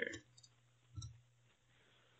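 Near silence: room tone after a voice trails off, with one faint short click about a second in.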